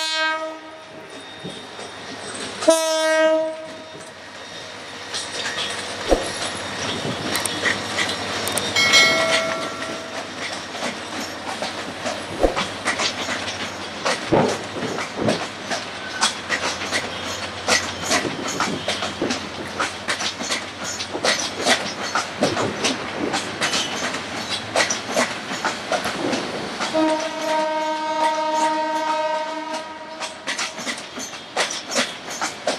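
A diesel locomotive's horn sounds a short blast at the start, then the wheels of a departing passenger train's PT INKA coaches clatter in a rapid clickety-clack over rail joints and points, the clicks growing denser after the first few seconds. A brief, higher horn note comes about nine seconds in, and a longer horn blast sounds near the end.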